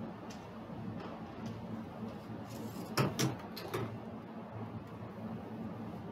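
Dice and chips clacking on a felt craps table as the dice are pulled back with a dice stick and chips are handled, with a cluster of sharp clicks about halfway through, over a low steady hum.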